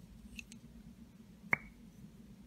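Plastic lip pencils being handled: a couple of faint ticks, then one sharp click with a brief ring about one and a half seconds in, over a low steady hum.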